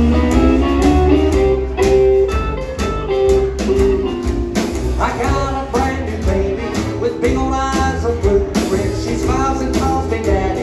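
Live band playing an instrumental break: accordion, steel guitar, electric and acoustic guitars, upright bass and drums, with a steady beat.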